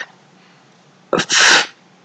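A man sneezes once, a little past a second in: a sudden, short, hissy burst.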